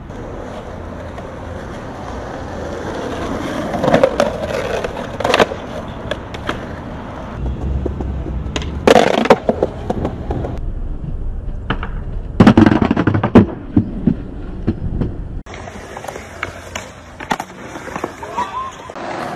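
Skateboard wheels rolling on concrete, broken by a handful of sharp knocks and cracks of the board as it is popped and landed, several in quick succession near the middle.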